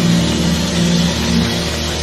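Live jazz quintet playing: long held notes over a steady bass.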